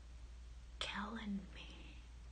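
A woman's brief whispered, muttered utterance about a second in, over a faint steady low hum.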